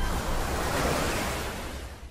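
Logo-animation sound effect: a whooshing noise swell over a low rumble, fading gradually.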